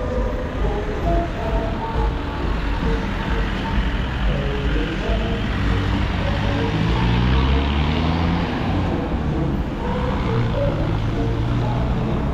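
Close passing road traffic: car engines and tyres on the street, with one vehicle's engine rising in pitch and growing loudest just past the middle as it pulls by.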